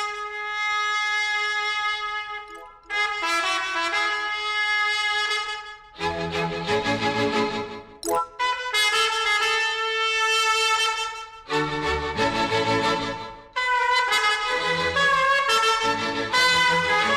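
Instrumental passage of a Tamil film song with no singing: melodic phrases of held notes broken by short pauses, with a bass line joining about six seconds in.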